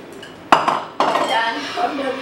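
A bowl and chopsticks clattering on a table: two sharp knocks about half a second apart, with a short rattle after the first. A voice follows briefly.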